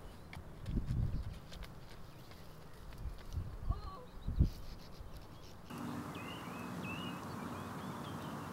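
Outdoor ambience: irregular low thumps, the loudest about four and a half seconds in, with a few bird chirps. Just before six seconds the sound cuts to a steady low hum with birds chirping above it.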